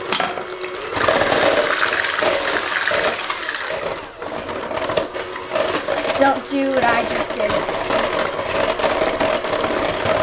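Electric hand mixer running at raised speed, its beaters whirring through cake batter in a stainless steel bowl with a steady hum. The beaters knock against the bowl at the start.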